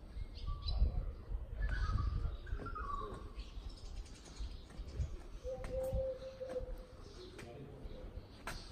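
Birds chirping, with a short run of falling notes about two seconds in, over a low rumble.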